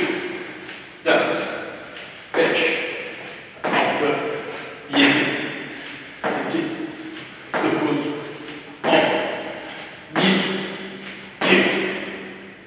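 A man counting exercise repetitions aloud, one count about every second and a quarter, each landing with a thud of feet from a jump squat on a gym floor; the hall echoes after each count.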